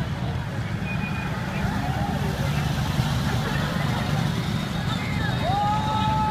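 Vehicles of a motorcade, a police motorcycle and SUVs, driving past: a steady low rumble of engines and tyres, with the voices of onlookers. A long held tone begins near the end.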